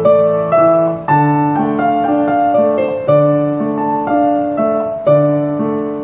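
Piano playing a hymn intro in A minor: a right-hand melody over left-hand broken chords, a new note struck about twice a second.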